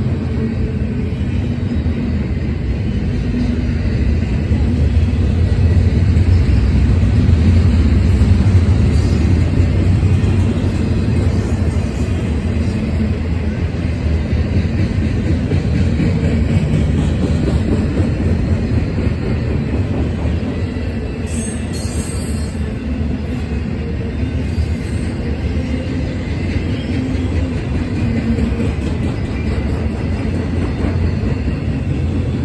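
Double-stack intermodal train's container well cars rolling past close by: a steady low rumble of steel wheels on rail, a little louder several seconds in.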